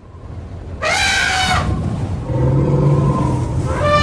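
Elephant-like trumpeting calls of woolly mammoths: one brassy call arching up and down about a second in, a low rumble in the middle, and another trumpet call starting near the end.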